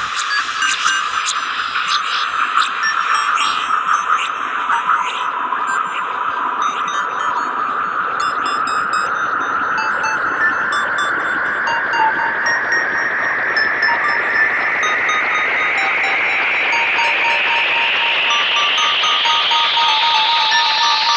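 Electronic music without vocals: a band of hiss that holds steady at first, then rises slowly in pitch from about eight seconds in, building up. Scattered short electronic bleeps sit above it, with a few clicks in the first seconds.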